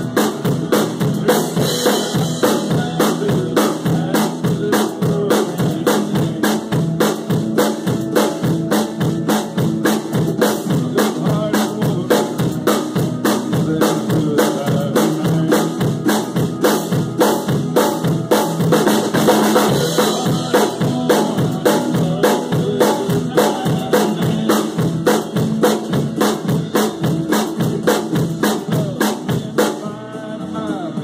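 Drum kit played in a steady country groove of bass drum, snare and cymbal strikes, along with a recording of the song whose pitched backing sounds underneath.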